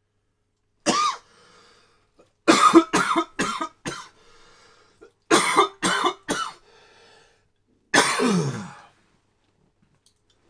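A coughing fit: one cough, then a run of four quick coughs, then three more, and finally a longer cough that trails off with a falling tone.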